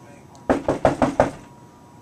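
Five quick knocks on a door, a sharp rapid series about half a second in.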